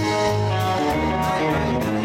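Live country band playing an instrumental passage, with electric guitar over a steady electric bass line.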